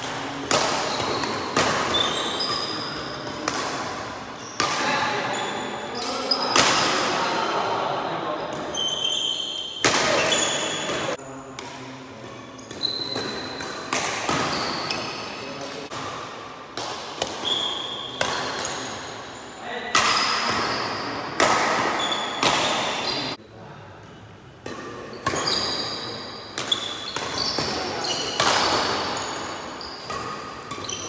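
Badminton doubles rally in a reverberant hall: rackets striking the shuttlecock again and again, each hit echoing, with short high squeaks of shoes on the wooden court floor. The play goes briefly quieter about two-thirds of the way through.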